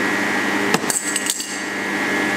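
A hand tool knocks once, then clicks and scrapes in a quick run against the display of a Fieldpiece MR45 refrigerant recovery machine, about a second in: a toughness test of the display that leaves only a little scratch. Underneath, the machine's compressor runs with a steady hum while it recovers refrigerant.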